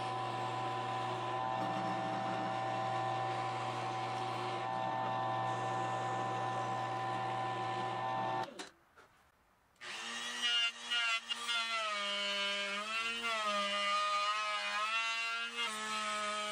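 A drill press motor runs steadily while its bit bores cavity holes in a solid-wood guitar body. About eight and a half seconds in the sound cuts out for about a second. Then a power tool runs again, its pitch dipping and recovering several times.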